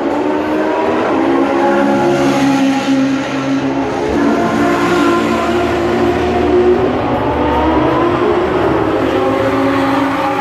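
Sports car engines out on the race track, several at once, their pitch rising and falling as the cars accelerate, shift and pass.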